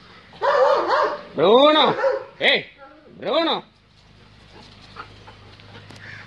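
A dog barking, four loud barks in the first three and a half seconds.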